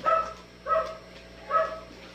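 A small dog barking three times in short, high-pitched barks, about one every 0.7 seconds.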